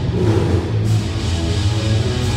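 Live death metal band playing loud: heavily distorted electric guitar, bass and drum kit in a dense wall of sound with a heavy low end.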